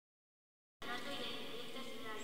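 Silence for nearly a second, then a low murmur of several voices in the echoing space of a church.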